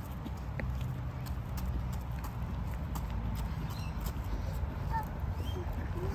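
Footsteps of people walking on an asphalt path, faint steps about two a second, over a steady low rumble of wind and phone handling.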